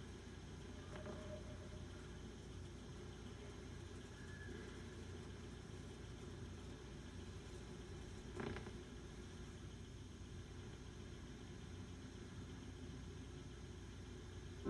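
Faint steady hum and hiss of a quiet background, with one brief short noise about eight and a half seconds in.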